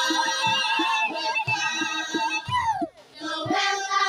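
Children's choir singing a welcome song over a steady drumbeat, about two beats a second.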